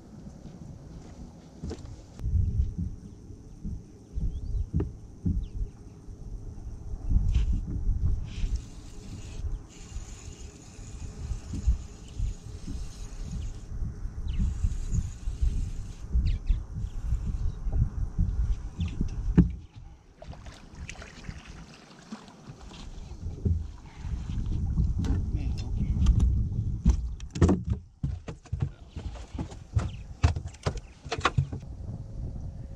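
Gusty wind rumbling on the microphone on the front deck of a bass boat. A steady high electric whine, typical of a bow-mounted trolling motor, runs from a couple of seconds in and cuts off about two-thirds of the way through.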